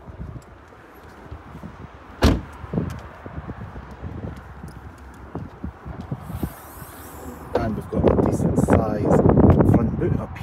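A single loud clunk from the car's bodywork about two seconds in, then lighter knocks and handling sounds on the Ford Mustang Mach-E GT as its front boot is opened.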